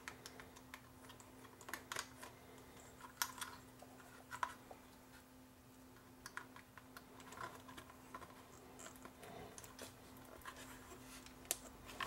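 Faint, scattered small clicks and rustles of hands handling wiring and plastic connectors on a subwoofer amplifier board, over a faint steady hum.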